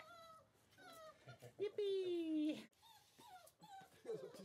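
German Shorthaired Pointer puppy, about five weeks old, whining: a few short whimpers, then one long, loud whine about two seconds in that falls slightly in pitch, and a few faint whimpers near the end.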